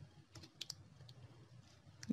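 Near silence with a few faint computer clicks clustered about half a second in.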